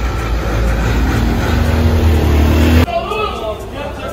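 Street traffic with motor scooters passing close, a low engine drone growing louder, cut off suddenly about three seconds in. After the cut, voices and chatter in a covered market hall.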